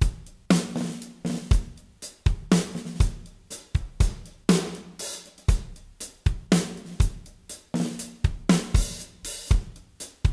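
A recorded drum kit played back solo: a steady groove of kick and snare alternating under hi-hat and cymbals, each snare hit ringing with a short pitched tone. This is the kit mix with the far room mics, a Blumlein pair of U47s, just pulled out.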